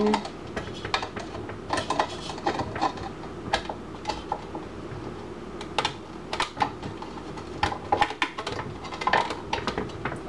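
Hard clear plastic fountain parts clicking and clattering as they are fitted together by hand: a quick, irregular run of small taps and clicks.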